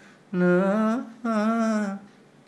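A man hums two held notes of a song melody, one after the other, each wavering slightly in pitch.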